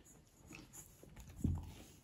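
A person eating rice by hand: fingers working biryani in a steel bowl and chewing, faint and soft, with one low thump about one and a half seconds in.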